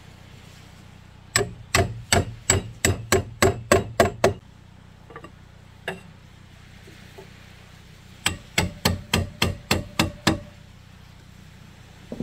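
Hammer striking in two quick runs of about ten blows each, a few seconds apart, at about three or four blows a second, with a couple of single knocks between the runs.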